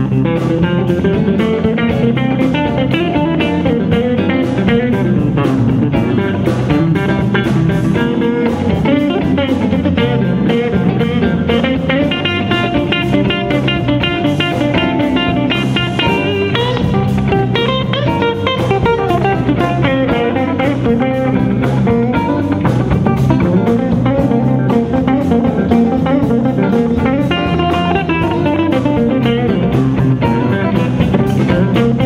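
Live blues band playing: a semi-hollow-body electric guitar picks quick runs of notes over bass guitar and drums.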